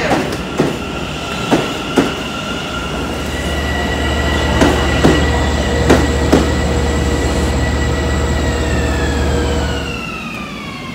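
Subway train running past a platform: a steady hum and whine from its motors, with sharp clacks of the wheels over rail joints, several in the first two-thirds. Near the end the whine begins to fall in pitch.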